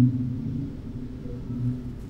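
A low, droning rumble from the film's soundtrack, swelling at the start and again near the end.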